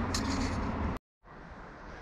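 Steady outdoor background noise that cuts out abruptly about a second in, a moment of dead silence at an edit, then a quieter background.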